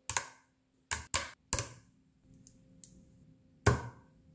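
5 mm rod magnets and 10 mm steel balls snapping together with sharp metallic clicks. There are two quick snaps at the start, three more within the next second and a half, a few faint ticks, then a loud snap near the end.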